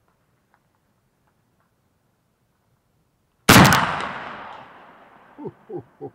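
A single shot from a Pedersoli 1874 Sharps replica rifle in .45-70 loaded with black powder, about three and a half seconds in. Its loud report dies away over about two seconds.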